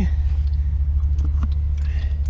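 Old, black engine oil pouring in a stream from the oil pan drain into a drain pan, over a steady low rumble.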